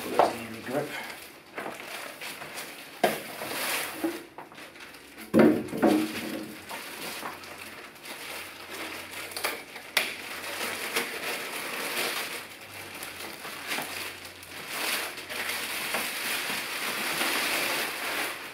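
Clear plastic bag crinkling and rustling as it is pulled off a floorstanding speaker, with a few knocks from handling the speaker and its polystyrene packing.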